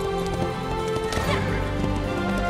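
Orchestral film score with sustained held chords, over the hoofbeats of galloping horses, with a horse whinnying about a second in.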